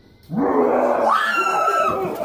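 A woman's sudden scream of fright, starting about a third of a second in, low at first, then jumping to a high, held pitch and breaking off near the end.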